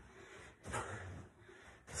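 Hard, breathy exertion from two people doing sprint strides, with light thuds of feet landing on a rug, one about half a second in and one near the end.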